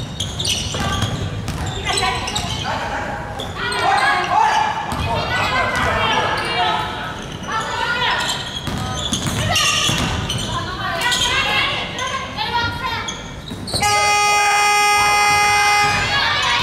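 A basketball being dribbled on a hardwood gym floor, with players' shouts echoing in the hall. Near the end an electronic game buzzer sounds one steady, loud tone for about two seconds.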